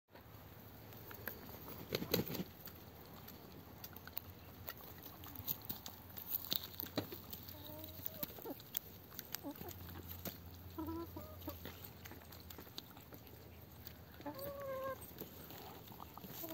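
A chicken clucking softly in short calls as it pecks at a ripe tomato, with sharp taps of its beak against the fruit. The clucks come from about seven seconds in, and the loudest one is near the end.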